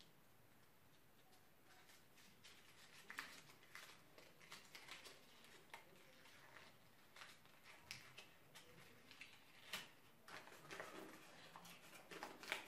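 Faint crinkling and rustling of a small folded piece of paper being worked open by hand. Scattered short crackles start about two seconds in and keep going irregularly.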